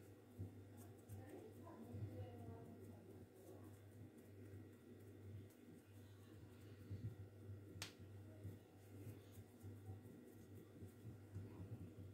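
Near silence: a steady low hum of room tone, with faint ticks and taps from hands pressing and folding pastry dough on a marble counter and one sharper click about eight seconds in.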